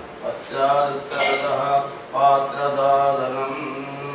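Male voices chanting Vedic mantras in a steady recitation, with a sharp metallic clink about a second in.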